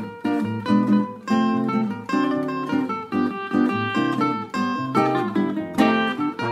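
Instrumental choro passage on cavaquinho and acoustic guitar: a plucked melody over rhythmic strummed chords, with no singing.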